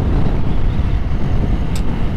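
Motorcycle riding noise on an action camera's microphone: a steady, loud low rumble of wind and road, with a brief faint hiss near the end.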